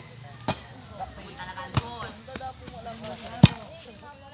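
A ball being struck three times as it is played back and forth over a net: sharp slaps about half a second in, just before two seconds, and the loudest a little before the end. Players call out between the hits.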